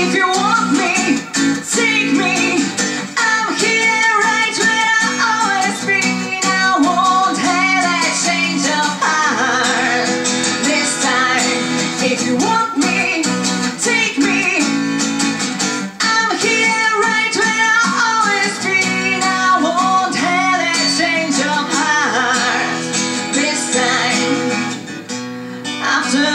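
A woman singing with a strummed acoustic guitar accompaniment.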